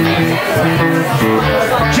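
Live blues band playing between sung lines: electric guitar and electric bass.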